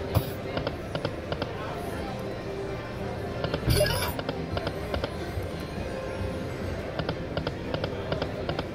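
Video slot machine playing its music and spin sound effects over casino noise, with quick runs of short clicks and one loud, harsh burst about four seconds in.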